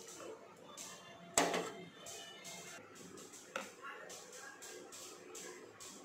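A metal spoon stirring thick gram-flour batter in a ceramic bowl: repeated soft wet scraping strokes, with a sharp clink of spoon against bowl about a second and a half in and a lighter one a couple of seconds later.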